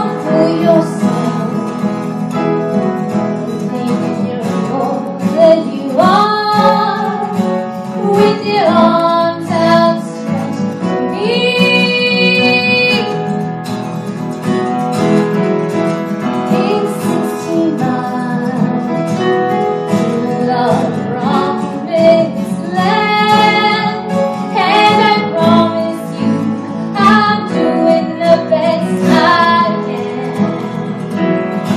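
A woman singing a song live with acoustic guitar accompaniment, holding several long notes along the way.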